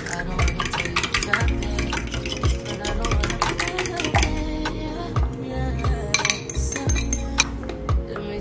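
Eggs being whisked in a ceramic bowl, the utensil clinking and scraping against the bowl in quick strokes, under background music with a deep, regular beat.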